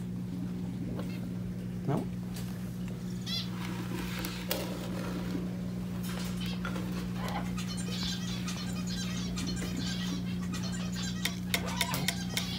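Faint, soft parrot calls: a few short chirps and chatter that come and go, over a steady low hum in the room.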